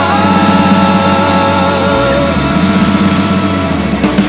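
Rock music: a distorted electric-guitar chord held and sustaining over a rough, rumbling low drone, with no singing, near the close of the song.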